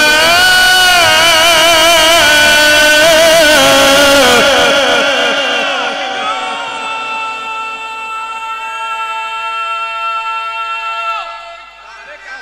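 A male Qur'an reciter chanting in the ornamented Egyptian mujawwad style into a microphone: a loud melismatic passage with wavering turns, then a quieter, long steadily held note that ends about eleven seconds in.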